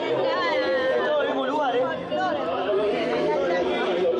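Chatter of many people talking at once, several voices overlapping, steady throughout.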